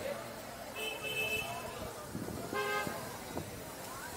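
Two short car horn toots on a busy street, one about a second in and one just before three seconds in, over street chatter and traffic.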